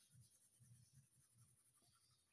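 Very faint scratching of a blue coloured pencil shading on paper in short repeated strokes, barely above room tone.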